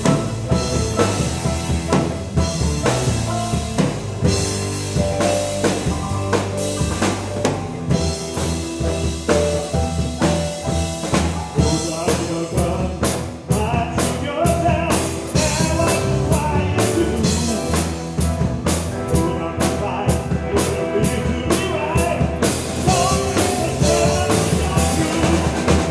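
Live rock band playing: drum kit, electric guitar, bass guitar and keyboards. From about halfway the drummer keeps a steady, even beat on the cymbals.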